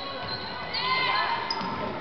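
Sounds of a basketball game on a hardwood gym court: voices calling out across the court and short, high sneaker squeaks.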